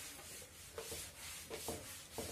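Faint, rhythmic rubbing strokes of something being drawn across a writing surface, about two a second, with a few faint short taps.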